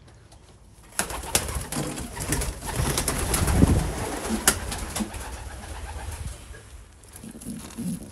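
Domestic pigeons in a loft: about a second in, a few seconds of clattering, rustling noise with sharp clicks set in, with some soft cooing among it, then it dies down near the end.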